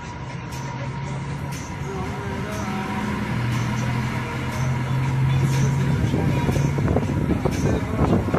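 Diesel engine of an Ashok Leyland Viking bus running as the bus moves off, heard from inside the cabin, with a steady low engine note that grows louder from about halfway through.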